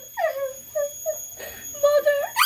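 A child's high-pitched wordless vocalising: a falling wail early on, then a few short whiny, sing-song notes.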